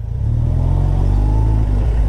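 Suzuki Hayabusa Gen 2's inline-four engine, breathing through a Yoshimura R-77 exhaust, pulling the bike along at low speed. It gives a steady low drone whose pitch rises slightly under throttle.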